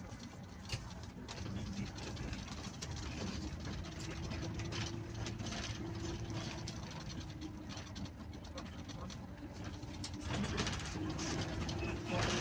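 Bus engine running while driving, heard from the cab with road noise. Its drone holds steady, then rises in pitch and grows louder about ten seconds in.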